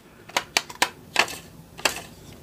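About half a dozen sharp, irregular plastic clicks as the rubber rear wheel of a hard-plastic toy motorcycle is turned by thumb. The wheel does not spin freely and just stops.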